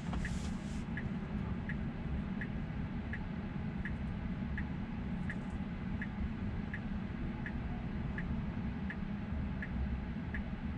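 Car turn-signal indicator ticking evenly, about three clicks every two seconds, over a steady low cabin hum while the car waits at a light to turn.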